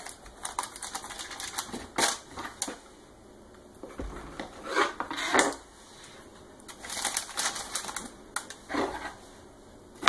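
A kitchen knife cutting through a soft rolled dough log and tapping on a granite countertop: a run of light, irregular clicks. A few louder rustles from the parchment paper lining the loaf pan come in about halfway and again near the end.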